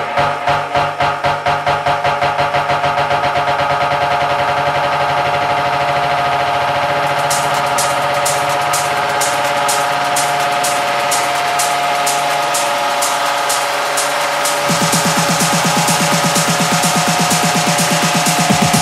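Tech house dance music in a breakdown: the kick drops out, leaving held synth chords over a fast even pulse. Hi-hats come in about seven seconds in, and a pulsing bass returns near the end.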